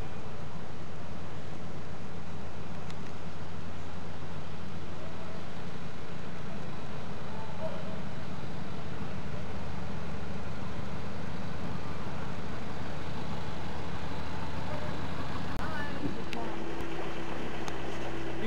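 Narrowboat engine running steadily at low speed, a deep even hum; its note changes about two seconds before the end.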